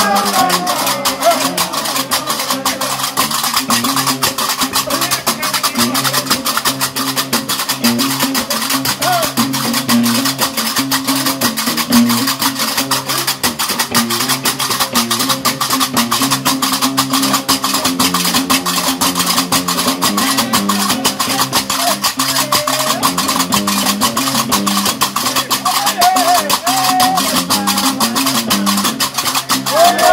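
Gnawa-style Diwan music: a guembri (three-string bass lute) plays a repeating low bass line under the continuous rapid metallic clatter of several pairs of karkabou iron castanets. A voice rises briefly in a few short sung phrases.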